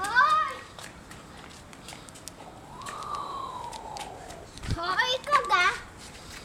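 A young child's wordless excited squeals and calls while playing: a short high squeal at the start, one long falling call in the middle, and a wavering, laughing cry near the end. Light footfalls click on the tiles in between.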